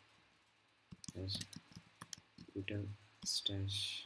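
Computer keyboard keys clicking in a few scattered keystrokes as a file path is typed, mixed with short spoken words.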